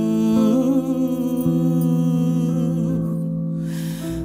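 Live acoustic trio music: sustained chord tones from acoustic guitar and double bass, with a wordless, wavering vocal line held over them between sung phrases.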